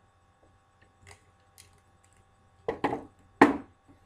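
Plastic wrestling action figures knocked against a toy wrestling ring's mat by hand. There are a couple of faint taps, then three sharp knocks near the end, the last the loudest.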